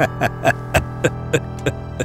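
A man laughing: a run of short "ha" bursts, about three or four a second, that grow fainter, over a steady low hum.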